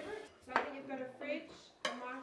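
Serving utensils and cutlery clinking against dinner plates: two sharp clinks, about half a second in and near the end.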